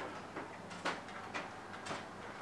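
Light clicks and knocks, about one every half second, over faint room tone in a meeting room while councillors cast electronic votes.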